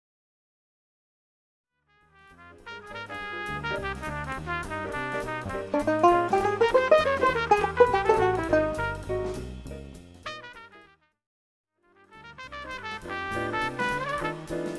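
Five-string banjo picked with fingerpicks, playing a fast single-string jazz ii–V–I lick as a run of quick plucked notes over low bass notes. It starts about two seconds in, stops near eleven seconds, and a second lick starts about a second later.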